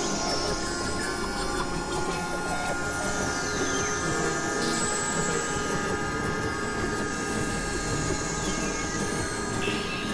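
Experimental electronic noise and drone music: a dense, steady wash of layered sound with sustained high tones and a few whistling tones sliding down in pitch about three seconds in.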